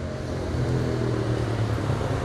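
A motor vehicle's engine running steadily, a low even hum.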